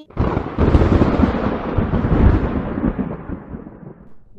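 A thunder-like sound effect: it starts suddenly and fades away over about four seconds.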